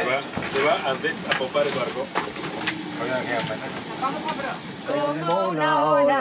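Indistinct crew voices inside a yacht's cabin, with scattered knocks and clatter. About five seconds in, a person starts singing.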